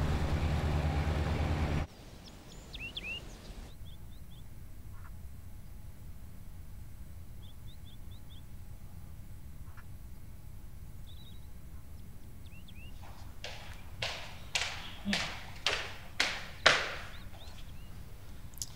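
A burst of loud low-pitched noise that cuts off abruptly after about two seconds. Then quiet room tone with scattered high bird chirps. In the last few seconds come hard footsteps, about two a second, of shoes on a wooden floor.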